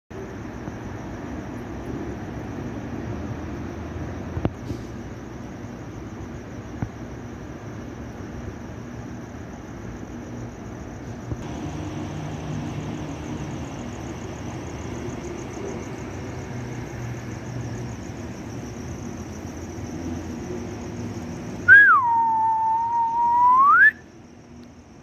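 Steady city background hum and noise with a faint high-pitched whine. Near the end comes a loud whistle-like tone lasting about two seconds, which drops in pitch, holds, then rises again.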